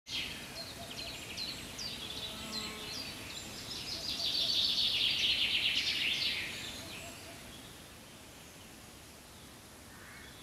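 A songbird singing: a run of short, high, down-slurred notes, then a long, dense trill that fades away after about six seconds, leaving faint outdoor ambience.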